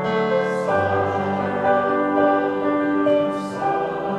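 Church choir singing slow, held chords.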